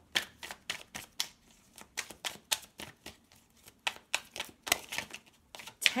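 A deck of tarot cards being shuffled by hand: an irregular run of sharp clicks, several a second, as the cards are split and pushed back together.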